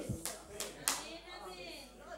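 A man clapping his hands a few times, unevenly, in the first second.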